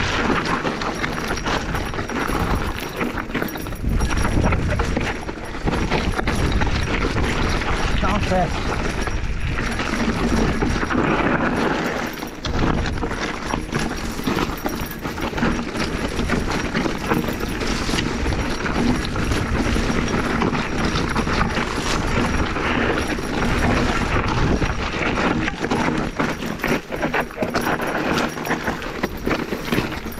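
Mountain bike descending a rocky, overgrown singletrack: a continual clatter and rattle of the bike over rocks, with brush scraping against the bike and rider.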